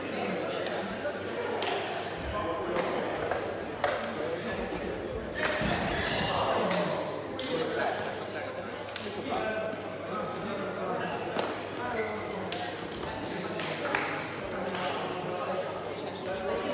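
Sharp knocks and thuds from kicks of the shuttlecock and players' footwork, echoing in a large sports hall. Indistinct chatter from players and spectators runs underneath, with no clear words.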